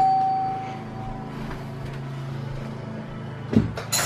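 A single ringing tone fading away over the first second, then a thump and a sharp click near the end as a front door is unlatched and opened, over a steady low hum.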